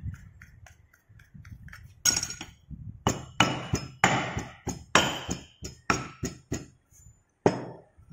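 Hand rammer striking moulding sand packed in a metal moulding box: a quick run of sharp knocks, about three a second, each with a short metallic clink, starting about two seconds in. This is the sand being rammed tight around the pattern to form the mould half.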